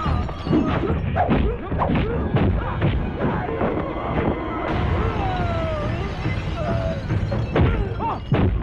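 Film fight sound effects: a rapid series of punch and thud impacts over background music.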